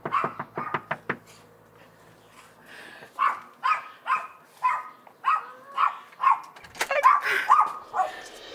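A quick run of about six knuckle knocks on a front door in the first second. From about three seconds in, a dog barks about ten times, roughly two barks a second.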